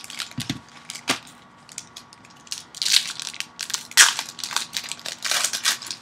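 Trading card pack wrappers crinkling and rustling as packs and cards are handled and opened, in irregular crackling bursts with small clicks; the loudest crinkle comes about four seconds in.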